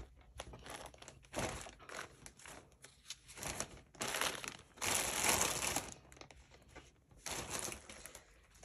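A thin clear plastic bag crinkling in a string of irregular bursts as it is handled with balls of yarn inside. The longest and loudest burst comes about four to six seconds in.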